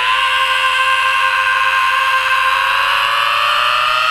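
Supertwin race motorcycle's engine heard from on board, held at high revs and rising slowly and steadily in pitch as the bike accelerates.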